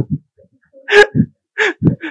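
A man laughing in a few short, breathy bursts, one about a second in and two more near the end.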